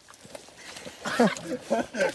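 A man's voice calling out from about halfway through, over the sucking and sloshing of boots stepping in deep mud.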